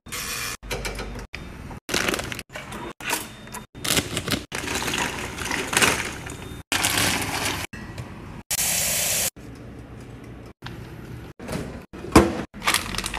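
A quick string of short kitchen sounds, about a dozen, each cut off abruptly by the next: a metal oven dial turned by hand, water at a rolling boil in a pot, and clattering and clinking of things being handled.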